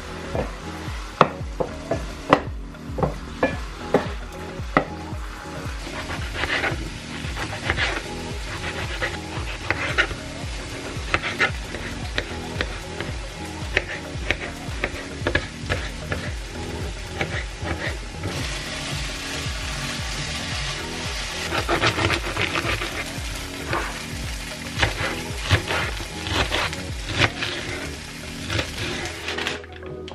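Food sizzling and frying in a nonstick pan, with repeated sharp taps of a knife on a cutting board as tomatoes are sliced. The frying is loudest partway through.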